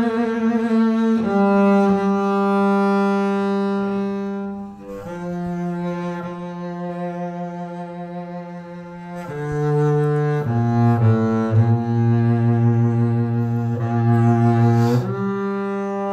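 Double bass played with the bow: a slow solo melody of long sustained notes, one after another. It grows softer in the middle, then moves down to lower notes from about ten seconds in.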